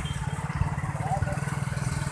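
Motorcycle engine running steadily at slow road speed, with a rapid low pulsing from the exhaust, under wind and traffic noise.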